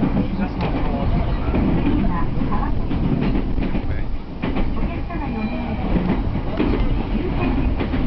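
Heard from inside a JR Tokaido Line commuter train car running over the tracks: a steady low rumble of the car in motion, with irregular wheel clacks over rail joints and points.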